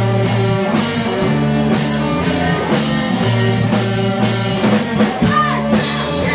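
Live rock band playing: electric guitars and a drum kit keeping a steady beat. A singing voice comes in near the end.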